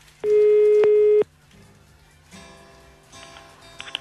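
Telephone ringback tone heard over the phone line: one steady beep about a second long, shortly after the start, as the called number rings. Faint background music follows.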